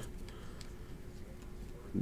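A quiet pause: low room tone with a faint steady hum and no distinct event.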